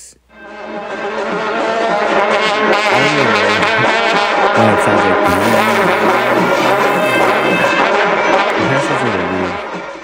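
A group of karnays, long straight Central Asian brass trumpets, blowing loud sustained notes together. The low pitches overlap and swoop up and down. The sound swells in over the first couple of seconds and fades away near the end.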